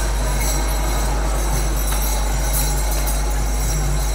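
Kirtan accompaniment between sung lines: hand cymbals and bells ringing continuously over a steady low hum, with a crowd clapping along.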